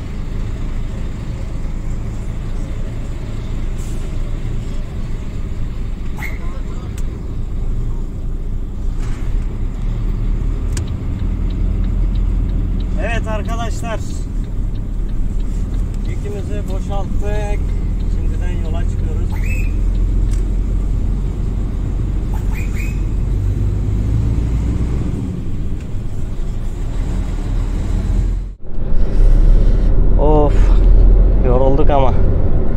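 Volvo semi-truck's diesel engine running at low revs as the loaded-off tractor-trailer pulls away slowly, a steady low rumble, with a few short bursts of voices partway through.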